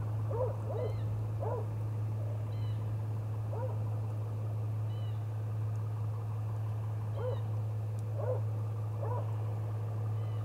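Short bird-like calls, single or in quick pairs, every second or two, with a few fainter higher chirps between them, over a steady low hum.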